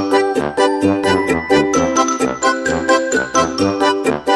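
Background music: a bright, tinkly tune with a steady beat, about four notes a second.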